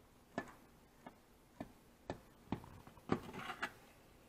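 Chef's knife cutting through a cooked meatloaf in an enamelware roasting pan, the blade tapping against the pan: about seven sharp taps roughly every half second, with a rougher scraping stretch near the end.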